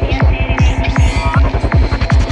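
Dark psychedelic trance at 158 BPM: a steady four-on-the-floor kick drum, about two and a half beats a second, with a rolling bass line between the kicks and short electronic synth blips and glides above.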